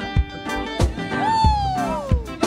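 Live gospel praise music: a woman singing into a microphone over a steady drum beat and sustained chords, with a high sung note in the second half that slides down in pitch.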